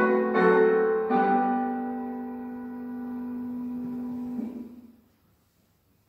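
Piano playing the closing phrase of a hymn tune: two more chords, then a final chord held for about three seconds that ends about four and a half seconds in.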